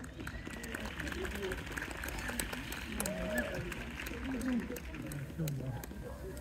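Murmur of a crowd: several voices talking at once, none of them clear, with scattered light clicks.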